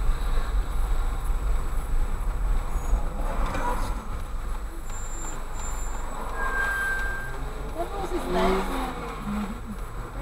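Low, steady rumble of a car's engine and cabin as the car creeps forward and stops, left idling. A short single beep sounds about two-thirds of the way through, and muffled voices come in near the end.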